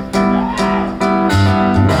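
Live rock band playing an instrumental stretch of a song: guitars, electric bass and drums.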